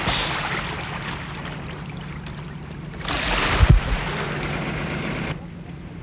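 Outdoor shoreline ambience dominated by wind buffeting the microphone, with a strong gust about three seconds in; the sound changes abruptly near the end.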